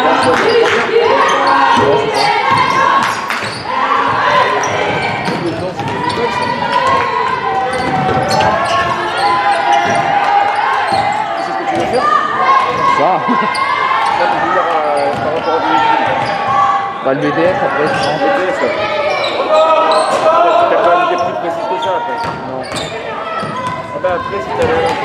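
Basketball being dribbled on a hardwood court amid overlapping shouts and chatter of players and spectators, with the echo of a large sports hall.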